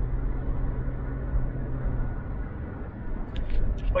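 Road and engine noise inside a moving vehicle's cab: a steady low rumble, with an engine hum that drops away about halfway through.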